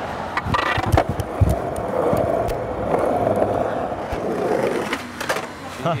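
Skateboard wheels rolling over pavement, with sharp clacks of the board's tail popping and the wheels landing an ollie shortly before the end.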